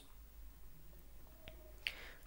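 Quiet room tone with a single faint click about one and a half seconds in.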